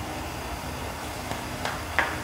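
Steady low hum and hiss of room tone, with a few faint taps in the second half as a phone is handled and put down.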